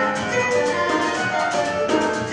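Latin jazz big band playing live: horns and piano sustaining chords over a steady beat of hand drums and drum kit.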